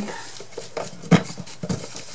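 A few light clicks and knocks of a small thin-wood craft box being handled and moved on a table, the sharpest just past halfway.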